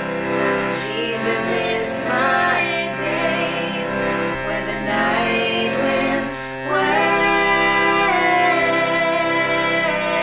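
Two women singing a slow country ballad together over guitar accompaniment.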